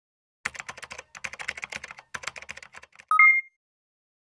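Rapid clicking in three quick runs, like typing on a keyboard, then a short two-note electronic beep, a lower note followed by a higher one. The beep is the loudest sound.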